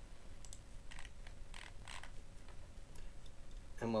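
A few faint, irregularly spaced computer mouse clicks over quiet room tone.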